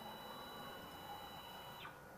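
AMCI SMD23E integrated stepper motor driving a ball-screw actuator through a move. It gives a faint, steady high-pitched whine at constant speed that glides down and stops near the end as the move decelerates.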